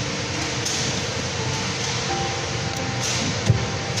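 Steady rushing background noise with a few faint held tones, and a single short thump near the end.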